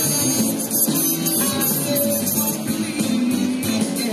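Live blues band playing, with electric guitar, keyboard and drums.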